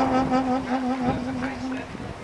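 Old silver-plated Amati alto saxophone holding a long low note that fades and stops near the end, with a person's voice talking over it.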